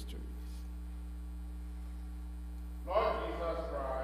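Steady electrical mains hum through a pause with no other sound; about three seconds in, a man's voice begins speaking.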